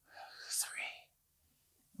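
A man's whispered word, breathy and soft, lasting under a second near the start.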